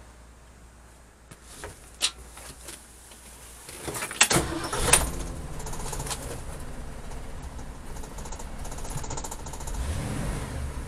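Keys clicking in the ignition, then the 1969 Ford Econoline's original 302 two-barrel V8 starts about four seconds in and settles into a steady idle.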